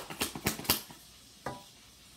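Tarot cards being handled: a quick run of sharp snaps and flicks as cards are pulled from the deck, then a single snap about a second and a half in.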